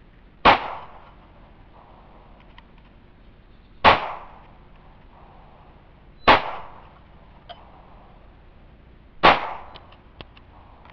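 Four single shots from a .22 pistol, each a sharp crack with a short echo, fired a few seconds apart.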